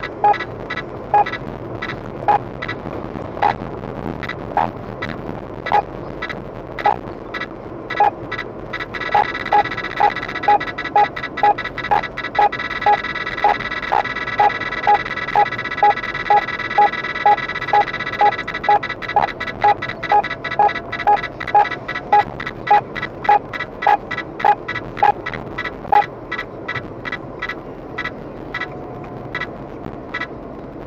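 Ramer Protector 950 radar detector beeping an alert over car road noise, marking a police speed radar ahead. The beeps come about once a second, quicken to about two a second with a steady alarm tone under them for some ten seconds, then slow and die away near the end.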